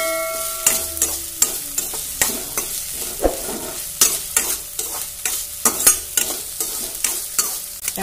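Metal spatula stirring and scraping chopped onions frying in oil in a steel kadai: repeated clicks and scrapes of metal on metal over a steady sizzle. The steel pan rings briefly near the start.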